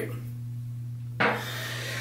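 Steady low electrical hum; about a second in, a sudden rubbing, scraping noise starts as objects are handled and shuffled on a surface.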